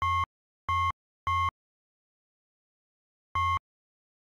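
Four short, identical electronic beeps, each about a quarter second long, all at the same mid pitch: three in quick succession, then a fourth about two seconds later, with dead silence between them.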